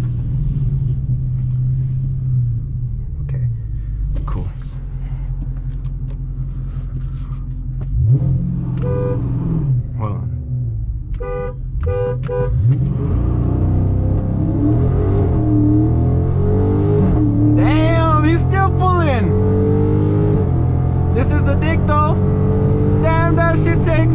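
Heard from inside the cabin of a 2023 Dodge Charger Scat Pack's 6.4-litre HEMI V8: it rolls slowly, then idles at a stop, with a few short horn toots. About thirteen seconds in it launches at full throttle, the engine note climbing and dropping through several upshifts and getting louder.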